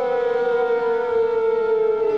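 Civil-defence air-raid siren wailing, one loud sustained tone that slowly falls in pitch.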